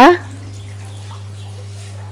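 Coconut milk simmering in a pan as a spatula stirs it, a faint liquid sound, over a steady low hum.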